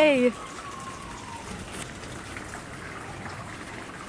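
A person's drawn-out call, held on one pitch and then falling, ends just after the start; after it only a faint, steady hiss of outdoor background remains.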